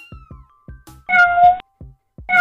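A cartoon cat meow sound effect: one steady-pitched meow about half a second long, about a second in, over light background music with a soft, even beat.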